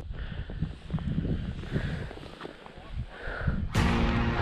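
Wind rumbling unevenly on the microphone of a body-worn camera on an open snowy ridge. Music comes in near the end.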